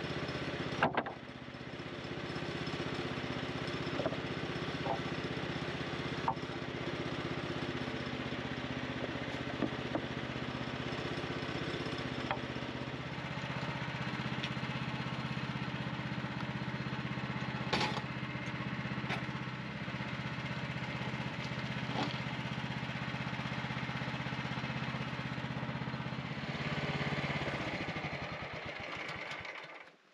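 Portable band sawmill's small gas engine running steadily, with sharp wooden knocks of sawn boards being handled and stacked. The engine swells briefly near the end, then winds down and shuts off.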